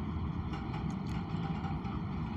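Steady low background rumble with a few faint steady hum tones above it.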